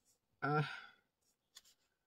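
A woman's single breathy, drawn-out hesitation "uh", fading out like a sigh about a second in.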